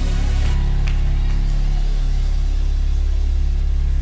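Live church band music opening a gospel song: a loud, steady, deep sustained chord held throughout, without any voices.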